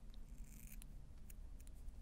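Fly-tying scissors snipping through a bunch of bucktail hair: a few faint, short snips.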